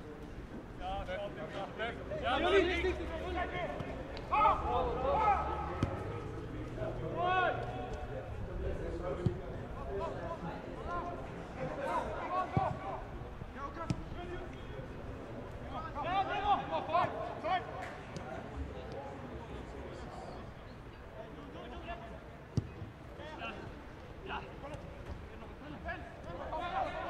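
Voices calling and shouting during a football match, in scattered bursts, with a few sharp thuds of the ball being kicked.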